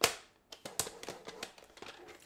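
Paper trimmer scoring cardstock: one sharp click as the scoring blade is pressed into place, then a run of light clicks and scrapes as the blade carriage slides along the rail.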